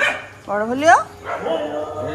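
Dogs barking and yelping, with one sharp rising yelp about half a second in as the loudest sound; a person's voice is also heard.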